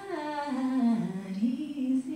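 A woman singing a slow, wordless, hummed melody, with acoustic guitar underneath.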